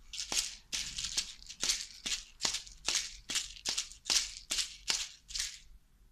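Asalato (kashaka) being shaken in a steady rhythm, about two to three strokes a second: each stroke is a rattle of the seeds inside the shells, several with a sharp click where the two shells strike together. The playing stops shortly before the end.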